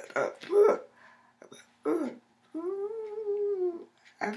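A woman's voice uttering short wordless vocal sounds, then a single long sung note whose pitch rises slightly and falls again, held for over a second near the end.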